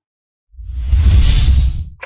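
A whoosh sound effect with a deep rumble underneath, a logo-reveal sting: it swells in about half a second in and fades out just before the end.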